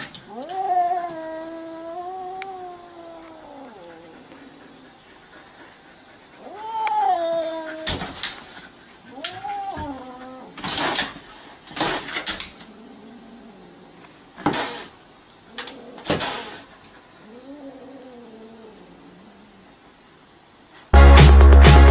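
A defensive cat yowling at a dog in long, wavering, drawn-out wails, four in all, the last one fainter. Short, sharp hisses break in between the wails.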